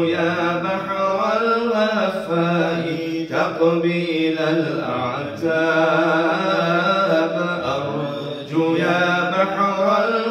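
Men's voices chanting Islamic dhikr unaccompanied, in long melodic phrases with held notes, broken by brief pauses about every two to three seconds.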